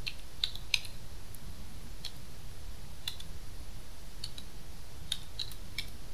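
Computer keyboard keystrokes: about a dozen separate, unevenly spaced key clicks as a short code is typed, over a low steady hum.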